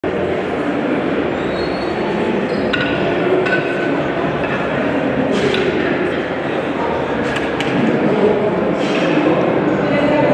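Background chatter in a large hall, with several sharp metallic clinks of steel barbell collars and plates, a few of them ringing briefly.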